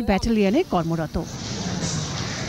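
A news narrator's voice finishes a sentence about a second in, then a steady hiss of background noise carries on.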